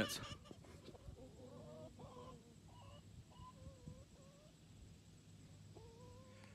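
Chickens clucking faintly, a few short wavering calls.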